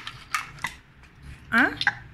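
A few light clicks and clatters of hard yellow plastic toy pieces being handled on a tiled floor, with a short voiced sound about one and a half seconds in.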